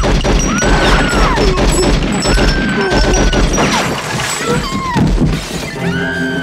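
A burst of gunfire with crashing and breaking, dense and loud throughout, and a woman screaming in long high cries over it. Film music runs underneath.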